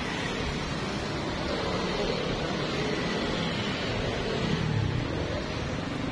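Steady hiss with a low rumble beneath: the ambience of a street-side crepe stall with a hot griddle in use.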